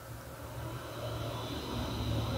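Computer cooling fan running with a steady whoosh and a faint high whine, growing gradually louder. It is being switched through HWiNFO's fan control.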